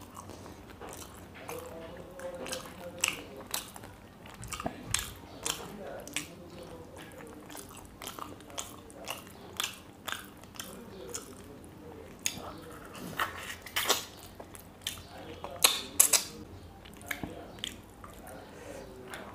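Close-up chewing and crunching of fried fish: many short, irregular crunchy clicks, the loudest about 13 to 16 seconds in.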